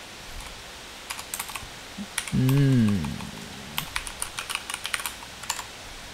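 Typing on a computer keyboard: irregular key clicks in short runs.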